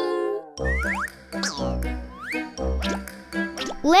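Upbeat children's background music with a steady bass beat, overlaid with several quick rising pitch glides like cartoon sound effects.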